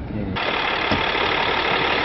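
Hyundai SUV: steady road and engine noise inside the cabin while driving, then a sudden cut about a third of a second in to a louder, steady hiss with a low hum.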